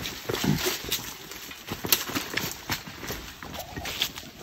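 Footsteps scuffing and knocking on stones, with leaves and branches rustling and snapping, as several people push their way down through dense bushes; irregular, uneven knocks.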